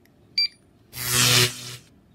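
A handheld barcode scanner gives one short, high beep as it reads a barcode from a printed lookup sheet. About half a second later comes a louder, rougher noise lasting about a second.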